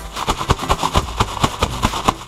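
Bubble wrap and foam packing peanuts rustling and crackling as bubble-wrapped boxes are pulled out of a cardboard shipping box: a rapid, irregular run of sharp crinkles over a low hum.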